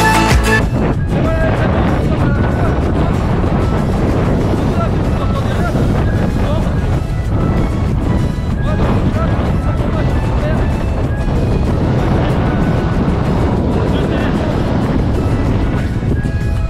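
Strong wind buffeting the camera microphone: a loud, steady, low rumble that almost drowns out a man's voice. Background music cuts off about half a second in.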